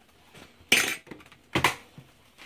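Two short clatters of kitchen utensils or dishes being handled on a counter, about a second apart, the second with a duller knock.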